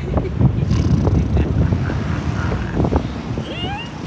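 Wind rushing over the onboard camera microphone of a Slingshot bungee-ride capsule as it swings through the air: a loud, ragged, low buffeting rumble. Near the end there are a few short high gliding vocal squeals from a rider.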